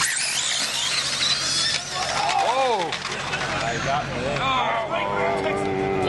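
1/10-scale electric RC drag car launching off the line: a sudden burst of noise with a rising high-pitched whine for about two seconds as it runs down the strip. People's voices calling out follow from about two seconds in.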